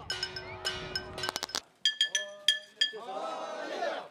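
Small metal gongs struck again and again, giving bright, ringing clangs. Men's voices call out over them near the end.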